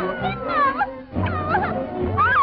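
Early-1930s cartoon soundtrack: band music with high, swooping cries that slide up and down in pitch over it, and a brief dip in the sound about a second in.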